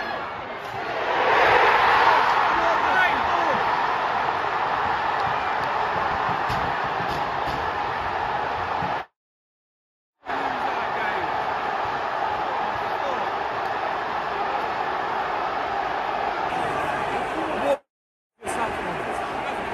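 Football stadium crowd roaring as a late goal goes in, the roar swelling about a second in, then loud sustained cheering and shouting. The sound cuts out for about a second near the middle.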